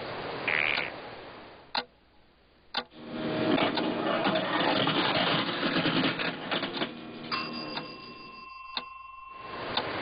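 Two single plastic clicks, then a rapid, dense clicking and rattling from a clear plastic medication dispenser for about four seconds, followed by a steady electronic beep tone held for a couple of seconds near the end.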